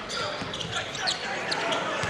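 Crowd murmur filling a packed gym, with a basketball being dribbled on the hardwood court and a few brief sneaker squeaks.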